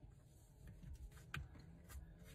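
Near silence: faint handling of a tight steering wheel cover being worked onto the wheel by hand, with one small click a little past halfway.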